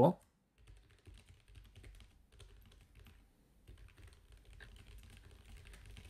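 Faint computer-keyboard typing: a steady run of soft keystrokes as a sentence is typed out.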